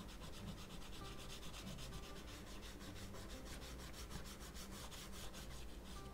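Dark red crayon scribbling back and forth on sketchbook paper, rubbing quickly in fast, even strokes as it fills in a shape.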